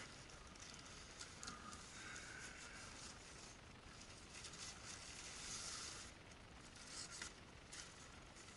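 Faint rustling and crinkling of a cloth shipping bag being handled and opened, with a few soft ticks and scrapes.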